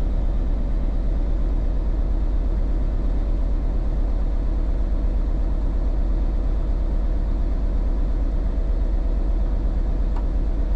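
Rollback tow truck's engine idling steadily, a low even rumble, while its oil pressure has not yet come up off zero; the pressure is slow to build after the start.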